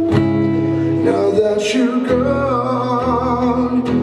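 A man singing long held notes over a strummed acoustic guitar, with the chord changing about halfway through.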